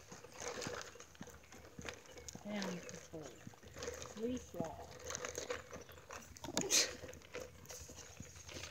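Footsteps of people walking on a concrete sidewalk, with faint, indistinct voices and a brief rustle near the end.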